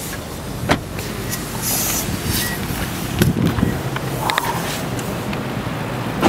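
A vehicle engine idling close by: a steady low hum under outdoor noise. A sharp click comes just before a second in, and a few knocks follow around three seconds in.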